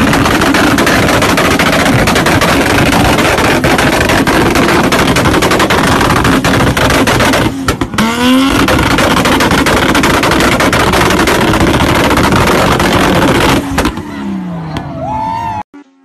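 Car engine revved hard at high rpm with rapid crackling pops from the exhaust. It briefly revs up about eight seconds in, then the revs fall away and the sound fades near the end.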